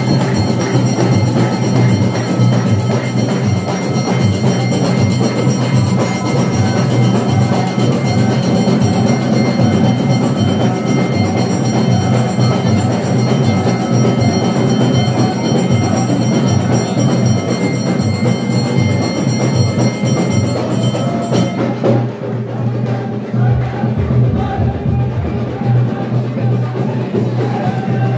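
Loud drum-led wedding music with a steady high held tone above the drums, which drops out a few seconds before the end.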